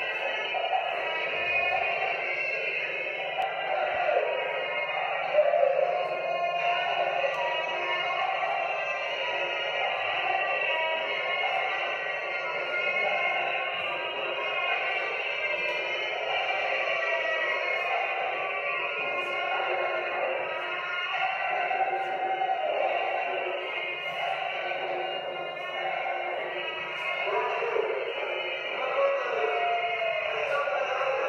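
Music with a singing voice, played back with little bass so it sounds thin.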